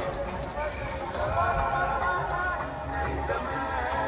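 Music with a singing voice played over a seaside public-address system, above a steady low rumble.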